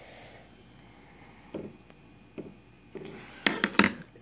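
Handling noise from a disassembled iPod touch's back casing being turned in the hand: a light knock about a second and a half in, another a second later, then a quick run of sharp clicks near the end.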